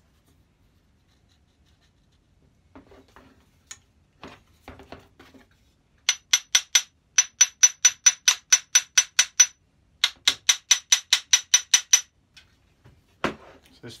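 Metal parts of a Lewin combination plough plane knocking together in two quick runs of sharp, ringing clicks, about five a second, as the jammed fence is worked on its rods. It is preceded by a few faint handling clicks.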